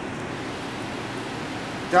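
Steady, even hiss of a running fan moving air, with no other distinct event; a man's voice begins just at the end.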